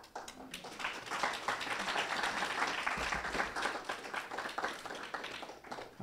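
Audience applauding, building up within the first second and tapering off near the end.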